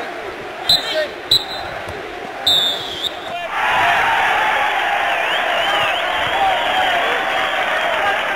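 A football kicked on an artificial pitch: two sharp thuds about half a second apart over open-air background noise. From about three and a half seconds in, a louder, steady dense sound takes over.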